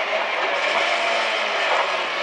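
Rally car at speed heard from inside the cabin: a steady mix of engine and tyre and road noise, with the engine note dropping slightly near the end.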